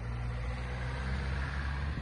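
Car engine idling close by, a steady low hum that cuts off shortly before the end.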